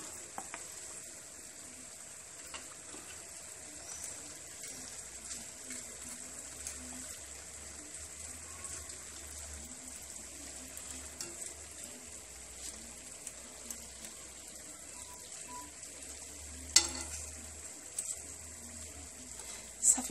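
Almond briouats deep-frying in a pan of oil, a steady low sizzle. A single sharp knock sounds about three seconds before the end.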